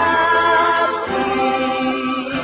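Christian gospel music: a group of voices singing long held notes in harmony, moving to a new chord about a second in.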